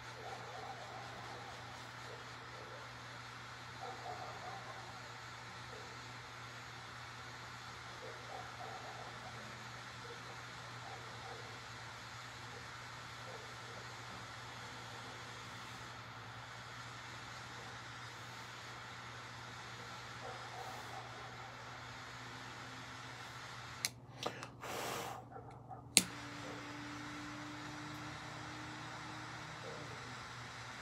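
Quiet room tone with a steady low hum and faint soft puffs as a cigar is lit and drawn on. A brief rustle and one sharp click come about four seconds before the end.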